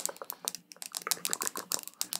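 Rapid, irregular close-miked clicks and taps, several a second, with no speech.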